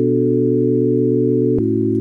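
Synth pad holding a sustained chord, then moving to another, slightly lower chord about one and a half seconds in.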